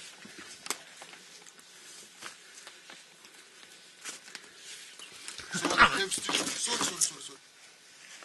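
Light knocks and scuffs of feet on loose lava rock and a wooden ladder as a person climbs out of a lava tube, with a louder stretch of scraping and an indistinct voice about five and a half to seven seconds in.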